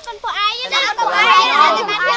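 Several high-pitched children's voices shouting and talking over each other in excitement, from about half a second in, with a faint steady low hum underneath.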